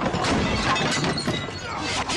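Repeated crashing and shattering, things breaking in a fight, mixed with shouting voices.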